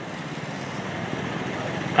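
Steady background noise of the venue, with no words, in a pause between a speaker's phrases at a microphone.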